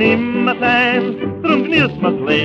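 Dance orchestra playing a Viennese song medley, reproduced from a 1932 78 rpm shellac record: a wavering, vibrato melody line over steady held accompaniment notes.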